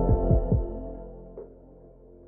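Intro sound for a logo: a sustained ambient music chord with three deep thumps that fall in pitch in the first half second, fading out over about a second and a half.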